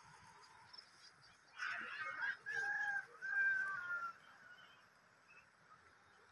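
A bird calling: a loud call of a few pitched notes lasting about two and a half seconds, starting about one and a half seconds in, the last note long and falling in pitch at its end.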